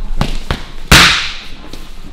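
Boxing-glove punches landing on training pads: three sharp smacks in quick succession, the third, about a second in, the loudest and crackiest.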